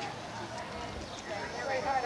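Indistinct chatter of several people's voices, growing louder near the end.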